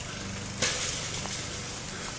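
Soft rustling of movement through garden grass and plants, with one short louder rustle about half a second in, over a steady low hum.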